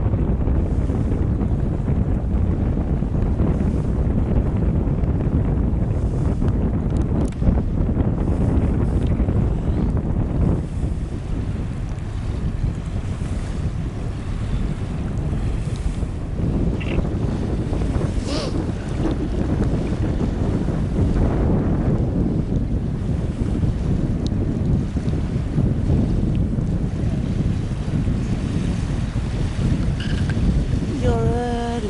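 Steady wind noise buffeting the microphone, strongest low down and unbroken throughout.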